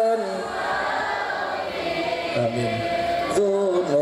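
Many voices singing together in a religious chant, a dense choral blend. A single held sung note fades out at the start and comes back about three and a half seconds in.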